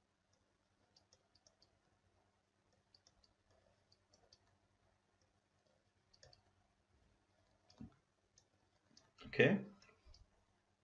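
Faint, scattered clicks and taps of a stylus on a tablet screen as a formula is handwritten, with a low thump just before 8 seconds. A short burst of voice comes near the end.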